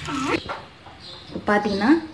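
Two short wordless voice sounds with a gliding pitch, one at the start and one near the end, with a quiet gap between them.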